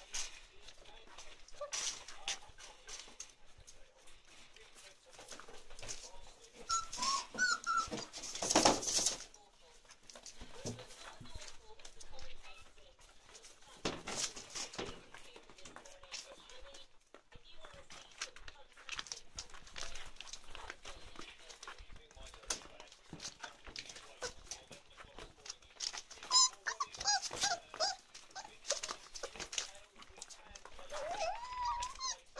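A litter of five-week-old chocolate Labrador puppies whimpering and squeaking now and then, with paws scratching and rustling on newspaper and foam mats; a louder rustle comes about nine seconds in.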